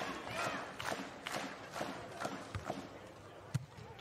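Low crowd murmur from spectators around a beach volleyball court, with scattered faint claps and calls. Several sharp smacks of a volleyball being struck come through, the loudest about three and a half seconds in.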